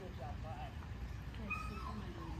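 A dog whimpering: a few short, wavering whines, then a higher, steadier whine about one and a half seconds in.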